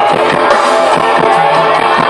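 Live folk-rock band playing an instrumental passage through the stage PA: strummed acoustic guitar, violin and accordion over a steady drum beat.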